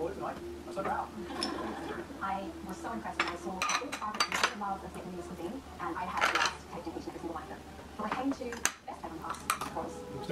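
Metal spoons clinking and scraping against ceramic serving bowls and plates as taco fillings are spooned onto tortillas: a scatter of sharp clinks, bunched in the middle and again near the end.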